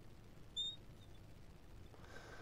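A marker squeaks once, briefly and high-pitched, on the glass of a lightboard about half a second in, over faint room tone.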